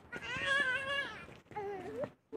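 A meowing call, cat-like: one long drawn-out meow lasting about a second, then a shorter one near the end.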